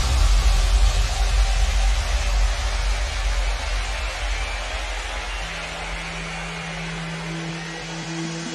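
Breakdown of a trance track: a wash of white noise over a deep bass fades down, and a held low synth note comes in about five seconds in, joined by a higher note near the end.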